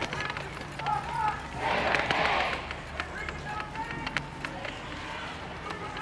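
Homemade electronic music built from mixed vocal sounds: short pitched blips over a low steady drone, with a swelling rush of noise about two seconds in.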